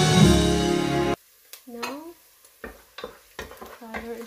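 Background music that cuts off suddenly about a second in, followed by a wooden spatula stirring chopped onions in a metal pot, with several sharp knocks and scrapes against the pot.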